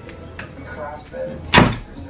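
A wooden door knocking once, a sharp, loud bang about one and a half seconds in, as the doors are handled.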